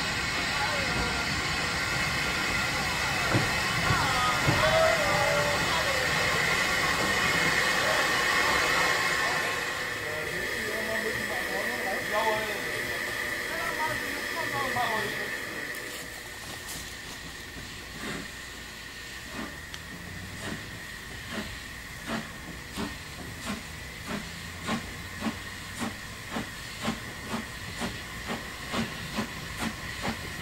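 Narrow-gauge steam locomotive 99 4511 letting off steam with a loud, steady hiss that dies away about halfway through. Later comes a steady run of exhaust beats, about one and a half a second and growing louder, as the locomotive works its train.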